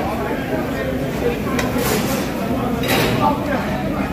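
Busy restaurant hubbub of many voices, with a few sharp knocks from the cooking area. The loudest knocks come about two and three seconds in.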